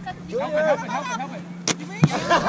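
Players' voices calling out during a rally, then a single sharp thump about one and a half seconds in as the volleyball hits the ground.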